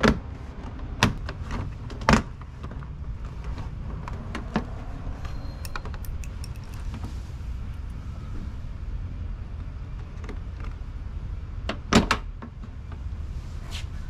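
Fender flare on a GMC Canyon being pried off its retaining clips: sharp snaps as clips pop loose, three within the first couple of seconds, a smaller one a little later and another loud one about twelve seconds in, over a steady low rumble.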